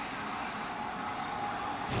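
Steady background noise of a football stadium sideline, picked up by the broadcast's field microphones, with no whistle or voice standing out.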